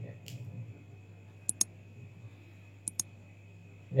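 Two pairs of short, sharp, high clicks, the pairs about one and a half seconds apart, over a steady low electrical hum.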